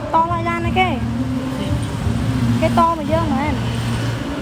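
People's voices talking indistinctly twice, near the start and about three seconds in, over a steady low hum.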